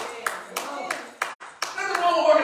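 Hand claps from the church congregation, about three a second, over voices, with a brief break in the sound about one and a half seconds in.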